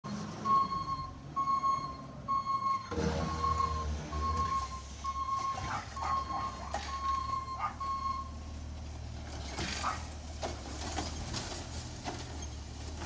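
Garbage truck's reverse alarm beeping about once a second as the truck backs up, over its running diesel engine. The engine comes up louder about three seconds in, and the beeping stops about eight seconds in, leaving the engine running.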